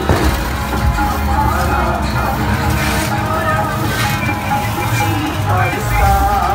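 Sikh devotional kirtan music with a voice over it.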